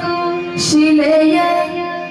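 A woman singing a Yakshagana melody line in a high voice, holding and sliding between notes over a steady electronic shruti-box drone, with one short hissy accent a little after half a second in.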